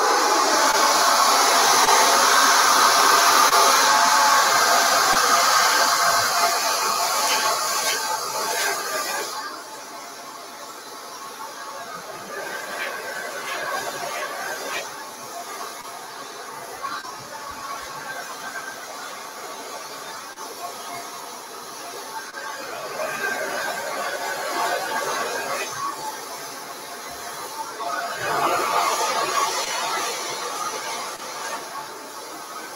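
Handheld hair dryer blowing hot air with a high whine during a blowout, loud for the first nine seconds, then quieter and rising and falling in level.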